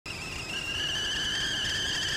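Old-film countdown sound effect: a steady high-pitched whine that rises slightly in the first half second, over a faint low crackle.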